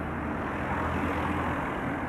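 A van driving past close by: its engine running and tyres on asphalt, a steady rushing traffic noise with a low hum underneath.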